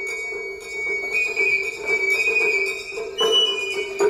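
Japanese matsuri-bayashi festival music: a bamboo transverse flute (shinobue) holds long high notes, stepping up in pitch a little after a second in, over a few sparse taiko drum strikes, the strongest near the end.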